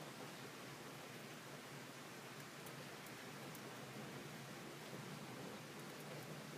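Faint rustling of paper and foil as fingers press a glued origami bird into place, over a steady low hiss.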